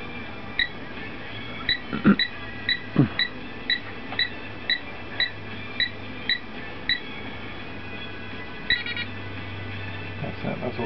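Satellite meter keypad beeping with each button press: about a dozen short, high beeps roughly half a second apart as the menu is stepped through, with a last quick cluster near the end. Two dull handling thumps come about two and three seconds in, over a faint low hum.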